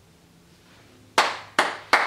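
Quiet room tone, then about a second in, three loud hand claps in quick succession, each with a short room ring-out, as clapping breaks a moment of silence.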